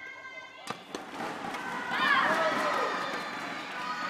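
Badminton rally: a sharp racket smack on the shuttlecock about two-thirds of a second in and another hit just after. Loud voices shouting from about two seconds in.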